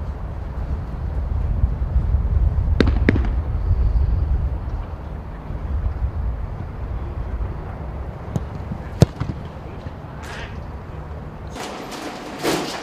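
Football being struck during a training session: sharp thuds, two in quick succession about three seconds in and one louder strike about nine seconds in, over a steady low rumble.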